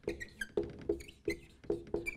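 Whiteboard marker squeaking on the board as words are written: a quick run of short squeaks, about four a second.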